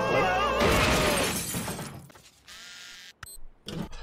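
A sudden shattering crash from a cartoon's soundtrack about half a second in, dying away over about a second and a half, right after a short stretch of music.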